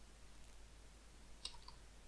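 Near silence with two faint quick clicks of computer keys close together about a second and a half in.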